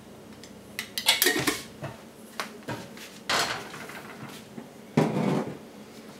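Glass jars and kitchenware handled on a kitchen counter: a scattered series of clinks and knocks, loudest about a second in and again near five seconds.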